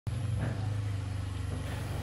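Motorcycle engine running steadily at low road speed, a low, even engine note.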